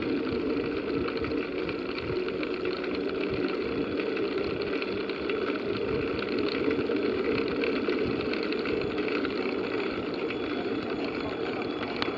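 Steady riding noise from a bicycle climbing a paved road, picked up through a handlebar-mounted camera: tyre and drivetrain rumble with a constant hum, at an even level throughout.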